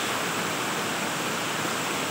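A small waterfall cascading down a rock face: a steady rushing of falling water.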